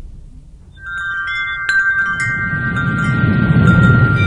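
Logo sting sound effect: shimmering chime tones come in about a second in, with a few bright strikes, over a low rumble that swells toward the end.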